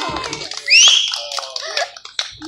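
Audience clapping at the end of a fire-show act, with one loud, high-pitched cheer rising in pitch about half a second in, followed by chatter.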